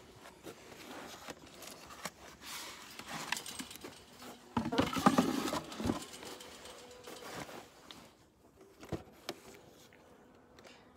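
Handling noises as a beehive is worked: irregular rustling and scraping with scattered clicks, louder for a second or so a little past halfway, then quieter.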